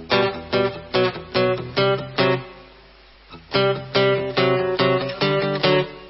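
A song played on strummed guitar: chords struck about twice a second, with a pause of about a second near the middle.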